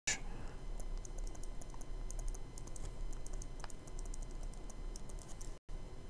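Pen stylus tapping and sliding on a tablet screen while handwriting an equation: quick, irregular light clicks over a steady low hum. The sound drops out for an instant near the end.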